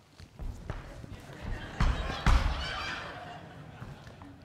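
Two dull thumps about half a second apart in the middle, the sound of a heavy leather boot being handled and knocked against a wooden stage floor.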